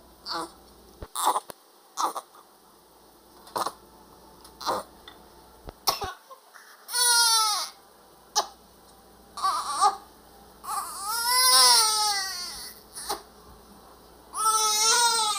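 Newborn baby crying in loud wails, each falling in pitch: one about seven seconds in, a short one a couple of seconds later, then a longer cry. A few short sharp sounds come first. The baby is wet and cold just after a bath.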